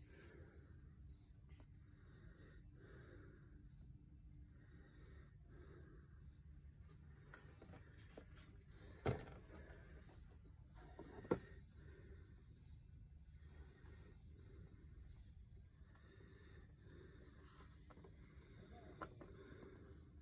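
Near silence: faint room tone with a low hum, broken by two brief knocks about nine and eleven seconds in.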